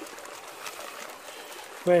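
Shallow river water trickling and sloshing around a plastic gold pan as it is worked just under the surface: a steady, even wash of water noise.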